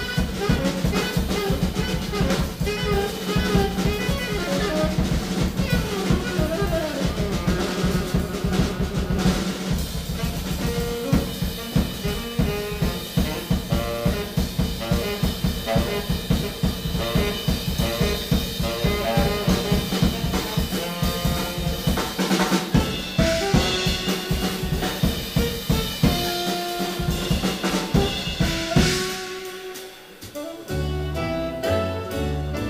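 A live jazz quartet playing, with the drum kit busy and to the fore, snare strokes, rimshots and rolls over a steady walking double bass, and saxophone lines heard more clearly in the last part. The music drops off sharply right at the end.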